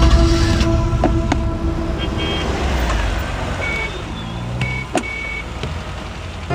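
Car engine running with a low rumble under street traffic noise, a few faint clicks, and a few short high beeps in the second half.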